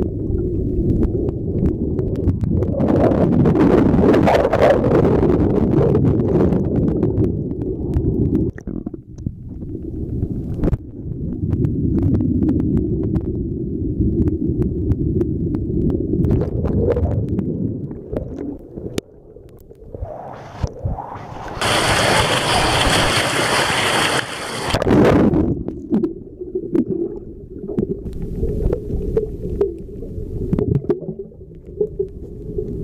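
Swollen stream in spate heard from underwater: a dense, muffled low rumble and gurgle of churning water and bubbles. About two-thirds of the way in, a brighter, louder rush of water and air lasts about three seconds, then the low underwater rumble returns.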